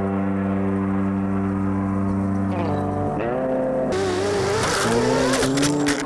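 An RC truck tearing through loose dirt over background music with steady held chords. In the last two seconds there is a loud rush of noise with a few sharp clicks as the truck kicks up and throws dirt.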